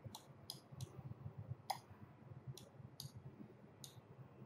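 Faint computer mouse clicks, about seven, irregularly spaced, over a low room hum.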